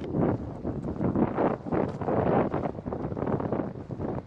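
Wind buffeting the camera's microphone in uneven gusts, a rumbling rush that swells and drops every fraction of a second.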